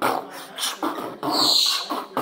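A man beatboxing into cupped hands in short percussive strikes, with a galah cockatoo letting out one loud, harsh screech about halfway through.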